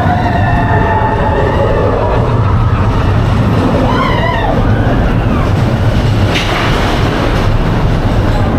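Expedition Everest roller coaster train running fast along its steel track, a loud, steady low rumble. Riders' yells glide up and down over it near the start and again about four seconds in.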